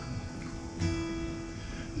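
Acoustic guitar strummed, with a chord struck just under a second in and left to ring.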